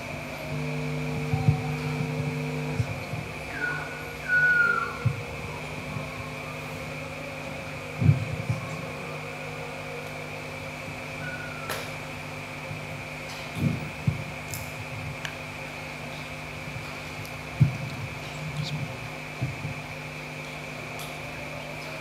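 Steady mechanical hum of a fan or the hall's sound system, with a constant high whine, in a large room. A stronger low hum is heard for the first few seconds, a short squeak about four seconds in, and a few scattered thumps and clicks.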